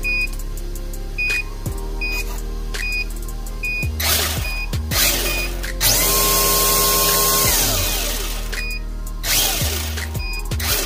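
Electric motor of a Tamiya FF03 front-wheel-drive RC car revved in short bursts with its wheels spinning free on a stand, whining up and down. The longest and loudest run comes about six seconds in, held steady for over a second before spinning down. Background music with a regular beeping beat plays under it.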